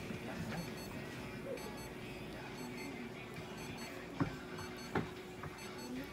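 Faint, high-pitched electronic double beeps recurring over low room noise, with two sharp knocks about four and five seconds in.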